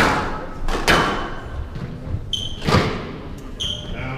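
Squash rally: three sharp echoing cracks of the ball being struck and hitting the walls, one right at the start, one about a second later and one near three seconds. Two short high squeaks of court shoes on the wooden floor come between them.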